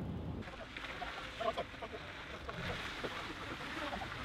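Faint outdoor background noise: a steady hiss with a car running at a distance as it tows a trailer, and a few faint distant voices.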